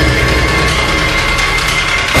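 Tense background music score with a steady low drone and held high tones.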